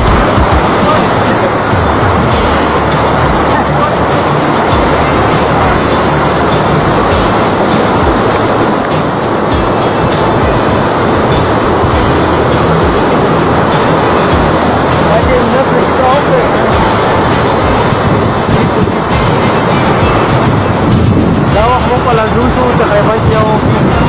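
A mountain river rushing white over boulders right by the microphone, a loud steady rush of water. A man's voice comes in over it near the end.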